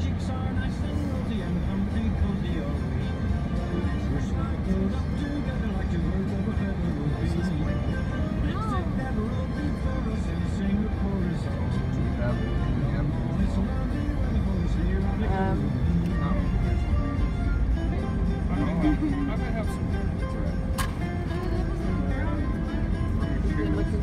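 Holiday music with singing playing on the car radio over steady road noise inside a moving car.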